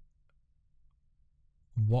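Near silence with a few faint, short clicks in the first second, then a man's voice starts just before the end.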